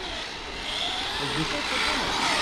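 Brushless electric RC car running on asphalt, its high-pitched motor whine and tyre noise growing louder as it comes toward the microphone.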